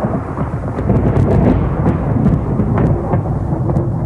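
Thunder rumbling continuously with sharp crackles through it, over a wash of rain.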